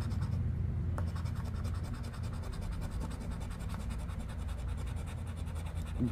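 A coin scratching the latex coating off a paper lottery scratch-off ticket: a steady run of quick, repeated rasping strokes, with one sharp click about a second in.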